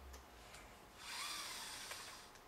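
Katana robotic arm's joints and gearing whirring for about a second as the arm is swung upward, the pitch rising then falling, after a few light clicks.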